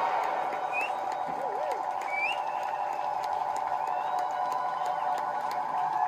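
Electric guitar feedback and effects-pedal noise: a steady drone with short gliding chirps and warbles sweeping up and down over it.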